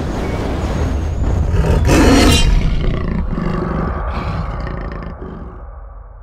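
Big-cat roar sound effect: one long, loud roar that swells about two seconds in and then slowly fades away.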